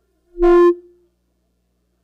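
A single loud, horn-like tone at one steady pitch, held for about half a second and then fading quickly.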